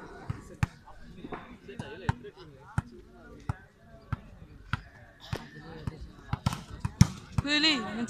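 A volleyball being hit and bounced on a dirt court: a string of sharp slaps, roughly one every half second to a second, with faint voices between them and a man calling out near the end.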